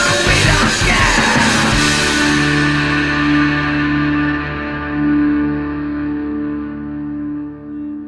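Rock song with distorted electric guitar: the beat stops about two seconds in, and a final chord is held, ringing out and slowly fading.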